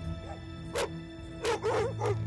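A Bulgarian tricolour hound barking, about three short barks in the second half, over steady background music.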